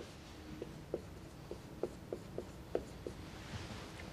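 Dry-erase marker writing on a whiteboard: a string of short, faint squeaks and taps as the symbols are drawn.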